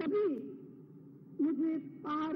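A woman speaking Hindi slowly into a microphone: two short phrases, one at the start and one about one and a half seconds in, with a pause between them.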